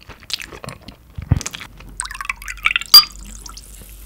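Close-miked wet, sticky eating sounds of raw beef sashimi being handled and chewed. There is a soft thump a little over a second in, and a sharp clink with a brief ring about three seconds in.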